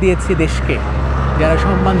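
A man talking in Bengali over the steady low rumble of city road traffic.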